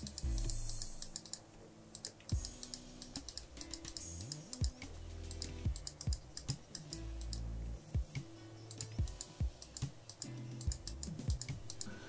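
Rapid, irregular clicking of a computer mouse and keyboard, over soft background music with a low bass line.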